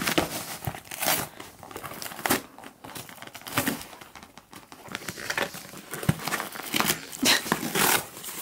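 A husky tearing open a cardboard parcel with its teeth and paws: irregular ripping and crumpling of cardboard and paper.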